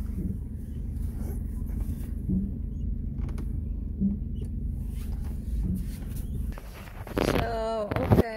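Low, steady rumble of a Hyundai car's engine and cabin, heard from inside as the car pulls into a parking space; the rumble drops away about six and a half seconds in.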